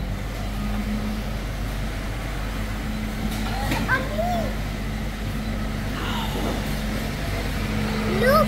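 Steady low hum of supermarket refrigeration and ventilation, with a child's short vocal sounds rising and falling about halfway through.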